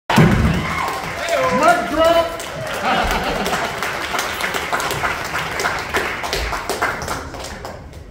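Audience applauding in a club room, with whoops and shouts from the crowd over the clapping; the applause dies down near the end.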